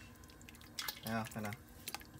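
Plastic ladle stirring in a stainless stock pot of simmering oxtail broth, with a few sharp clicks of the ladle against the pot and liquid dripping as a piece of oxtail is lifted out.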